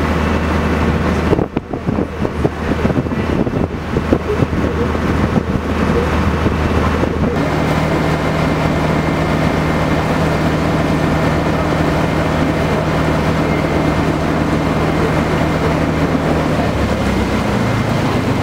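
A boat's engine running steadily, heard from on board. The sound is uneven and gusty for the first several seconds, then settles into an even hum.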